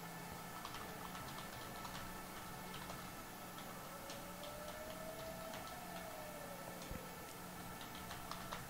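Faint irregular clicking over a low steady electrical hum, with a faint tone that rises and falls about halfway through.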